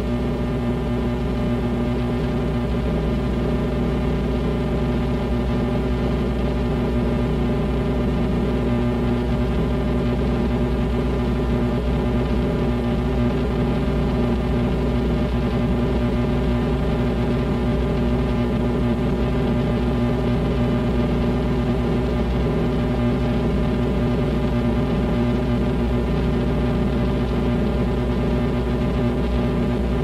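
Steady electrical mains buzz with a deep hum beneath it, unchanging throughout, with no drums or changing notes: the band's playing has dropped out of the recording, leaving only the hum.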